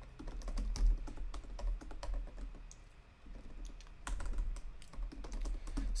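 Typing on a computer keyboard: a quick run of key clicks that thins out briefly around the middle, then picks up again.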